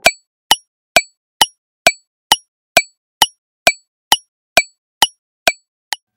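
Countdown timer sound effect: sharp, clock-like ticks, evenly spaced a little over two a second.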